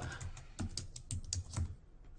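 Typing on a computer keyboard: a quick run of keystrokes, about a dozen in two seconds, as code is entered in an editor.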